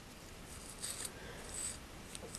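Faint rustling of a hair pick being drawn through a doll's curly hair, two short soft strokes in the second half.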